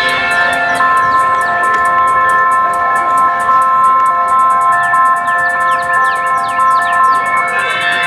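Live electronic music from synthesizers: a sustained multi-note synth chord under a rapid, high ticking pattern, with short falling swoops in the upper range. The ticking gets faster about halfway through.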